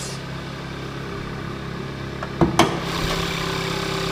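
Kia Forte's 2.0-litre GDI four-cylinder engine idling steadily. About two and a half seconds in come two sharp clunks as the hood is released and raised, and the idle sounds louder once the engine bay is open.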